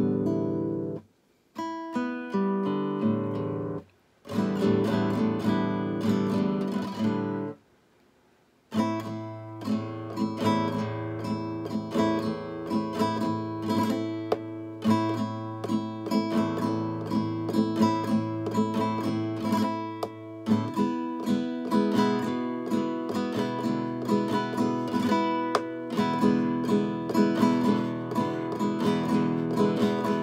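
Acoustic guitar being strummed: a few short chord strums broken by brief pauses, then steady strumming of chords from about nine seconds in, with a change of chord about twenty seconds in.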